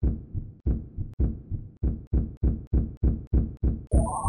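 Cartoon repair sound effect: a steady run of dull, low thumps, about three a second, as a rusty level crossing is being restored. Right at the end a rising sweep begins.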